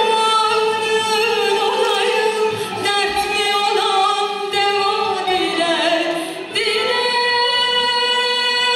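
Turkish classical (art) music song in makam Uşşak: a female voice singing long, held notes with vibrato, backed by a choir and an ensemble of traditional instruments. The melody sinks lower about six seconds in, then steps back up.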